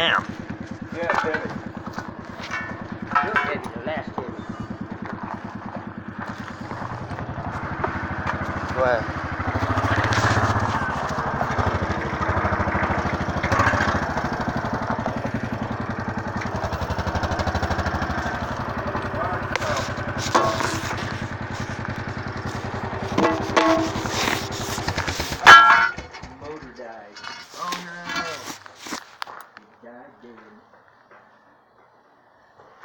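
An engine running steadily, growing louder for a stretch in the middle, then stopping abruptly with a loud knock about 25 seconds in.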